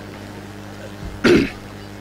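A man clears his throat once into a close microphone, a short loud rasp a little past the middle, over a steady low hum from the sound system.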